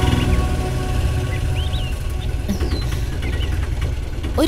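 Auto-rickshaw engine running with a steady low rumble, with a few short bird chirps over it. Background music fades out at the very start.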